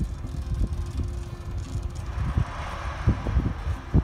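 Ruston-Bucyrus RB30 dragline working at a distance, its engine and winches running under load as the bucket is hoisted, heard as a low rumble with irregular thumps and a rushing noise that builds about halfway through; wind buffets the microphone.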